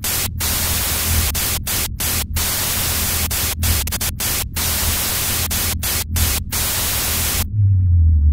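Loud static hiss, like a detuned TV, stuttering through about ten brief dropouts over a low droning bass. The static cuts off about half a second before the end, leaving a deep low tone.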